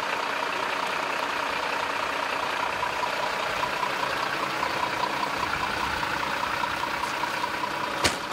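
Fire engine's diesel engine running steadily at idle close by, with a steady whine over the engine noise.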